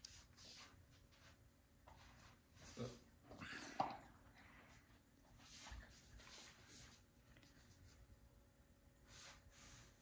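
Near silence with faint sounds of a Komondoodle dog shifting about on carpet and breathing as it gets up and sits, and one short click about four seconds in.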